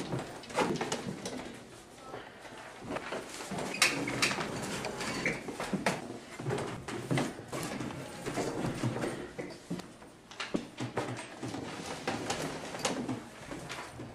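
Handling noises in a small room: irregular light clicks and knocks, with faint murmured voices now and then.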